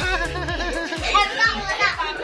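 A young child's high, warbling voice babbling over steady background music.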